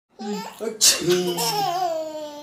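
A baby laughing in bursts, then a long, high, falling vocal sound.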